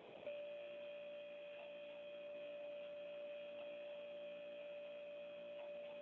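A faint, steady electronic hum at one fixed pitch, starting abruptly a moment in, with fainter overtones above and below it.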